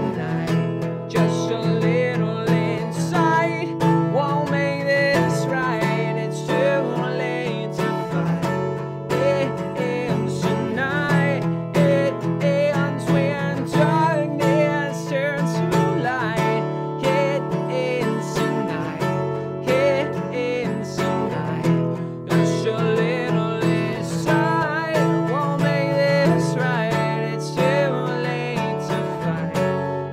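Steady acoustic guitar strumming with a man singing over it: an unplugged rock ballad.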